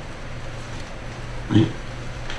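A steady low hum in a pause between words, then a man says one short word about one and a half seconds in.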